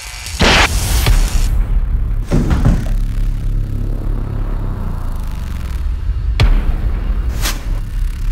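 Background music with a steady low bed, broken by sudden booming hits: a loud one about half a second in and more near the middle and near the end.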